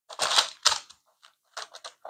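Square metal pastry cutter pressed down through a sheet of sponge cake onto parchment paper and a wooden board: two louder scraping clicks in the first second, then a quick run of short clicks in the second half.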